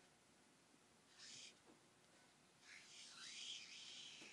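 Faint marker on a flip-chart pad: a short scratchy stroke about a second in, then a longer, squeaky stroke in the second half.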